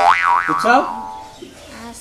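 A cartoon-style 'boing' comedy sound effect that starts abruptly, its pitch wobbling up and down twice before sliding down over about a second. A brief spoken word comes in over it.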